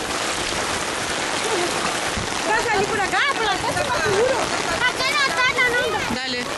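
Steady rain hiss over floodwater, with a child's high-pitched voice crying out over it from about halfway through.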